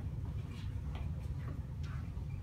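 Quiet room with a low steady hum and a few faint light taps, about one every half second.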